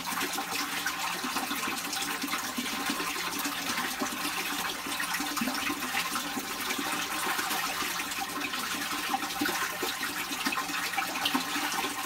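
Steady rushing noise like running water.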